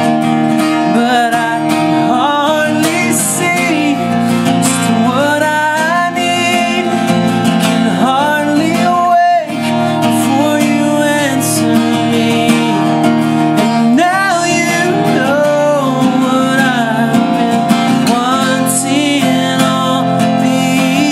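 A man singing over a strummed acoustic guitar, the voice sliding between held notes, with a brief drop in level about nine and a half seconds in.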